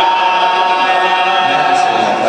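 Men's voices singing one long held note without instruments, dropping in pitch partway through.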